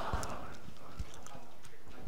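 Quiet room background with a few faint, light clicks or taps.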